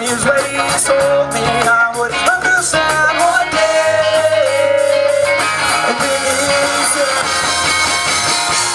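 Live rock band playing: electric guitar, bass guitar and drum kit, with drum hits throughout and held, bending melody notes.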